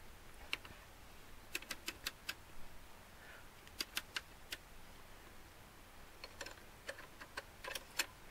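Faint, irregular metallic clicks from a Webster mainspring winder being cranked by hand, winding a heavy clock mainspring tighter. The clicks come singly and in small bunches.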